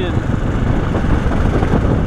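Riding noise of a KTM 690 single-cylinder motorcycle on a gravel road: engine, tyres and wind blended into a steady low noise.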